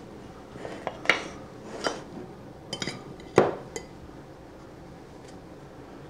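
Kitchen utensils and dishes clinking and knocking about half a dozen times in the first four seconds, with the loudest knock about three and a half seconds in, while the sandwich is being put together.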